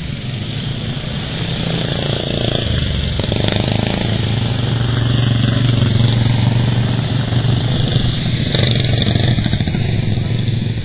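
Several racing lawn mower engines running hard as the mowers lap a dirt track, a steady loud drone that grows louder about four seconds in and stays loud as they come closer.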